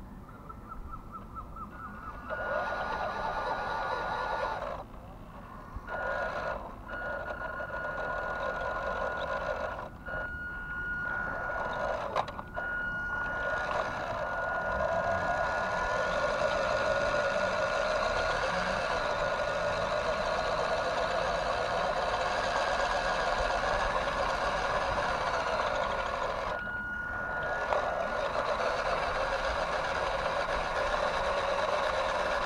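Small electric motor and gears of a WPL B-1 1/16 RC military truck whining as it drives, with a steady high tone over the gear noise. It starts and stops several times in short bursts, then runs continuously, with one brief pause near the end.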